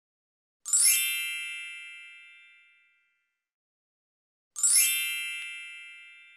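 A magical sparkle chime sound effect, played twice about four seconds apart. Each is a quick shimmering run into a bright ringing chord that fades away over about two seconds.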